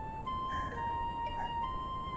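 Soft background film music: a slow melody of long held notes, two of them overlapping near the middle, with no speech over it.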